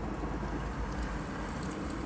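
Steady low rumble with a faint hiss: outdoor background noise, with no distinct events.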